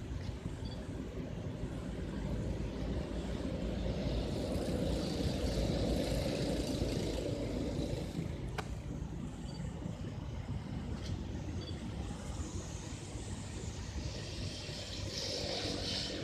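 Motor traffic on a nearby road: a steady low rumble that swells for a few seconds in the middle, with one sharp click about eight and a half seconds in.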